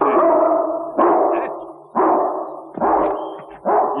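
A big dog barking: five loud barks about a second apart, each with a long fading tail.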